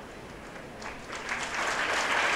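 Audience applause that starts faintly about a second in and grows steadily louder.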